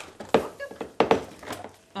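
Kitchenware clattering: two sharp knocks about two-thirds of a second apart, followed by a few lighter clinks.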